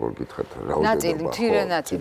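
Speech only: a person talking in a studio, no other sound standing out.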